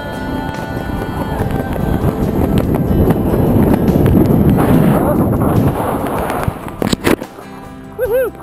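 Wind rushing over a body-mounted camera's microphone as a tandem parachute comes in to land. It builds to loud and then drops away, with a couple of sharp knocks near the end as the pair touch down.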